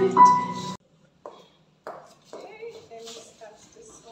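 Female voices and an electronic keyboard hold the last chord of a duet, which cuts off abruptly under a second in. Then come a couple of soft knocks and faint, quiet talking.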